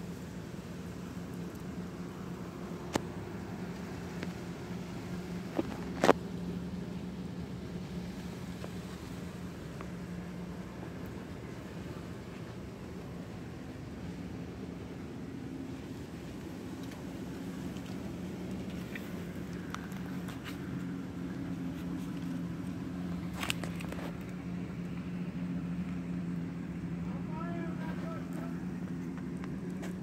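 A steady low motor hum, like an engine running at a constant speed, with a few short sharp clicks scattered through it.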